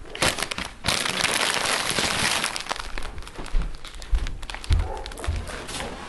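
Plastic packaging crinkling and rustling as it is handled, densest in the first few seconds, followed by scattered clicks and a few low thumps.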